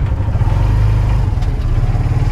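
Motorcycle engine of a tricycle running steadily under way, heard from the sidecar as a low hum that swells slightly in the middle.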